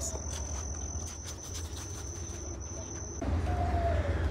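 A steady, high-pitched insect trill with brief gaps that stops abruptly about three seconds in, giving way to a louder low rumble.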